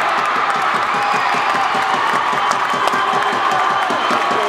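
Spectators crowd cheering and clapping steadily after a volleyball point ends, many voices shouting together.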